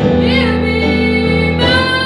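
A young woman singing solo, accompanying herself on a Yamaha digital keyboard playing sustained piano chords. Her voice bends in pitch on a note just after the start, then moves to a new held note near the end.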